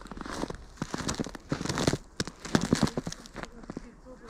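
Footsteps crunching on a trampled, thawing snow path: a quick, irregular series of crisp crunches.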